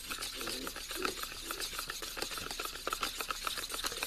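Plastic spoon stirring a thick gelatin, water and glycerin mixture in a plastic cream-cheese tub: quick, light, irregular scrapes and clicks of spoon against tub.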